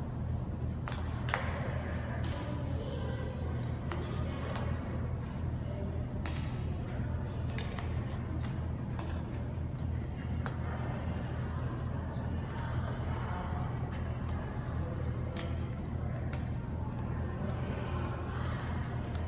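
Sharp taps of badminton rackets striking shuttlecocks, a dozen or so at irregular intervals, in a large gym hall over a steady low hum.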